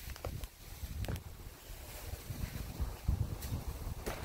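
Wind rumbling on a phone microphone, uneven and low, with a few faint knocks.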